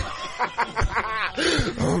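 People laughing: a quick run of short chuckles, then a drawn-out "oh" near the end.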